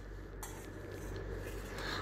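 Faint scraping of a metal spatula against a kadhai as cooked chutney mix is scooped into a steel bowl, with a soft knock about half a second in.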